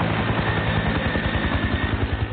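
Helicopter rotor sound with a fast, steady chop of the blades under a thin, steady whine, sounding dull like an old TV soundtrack.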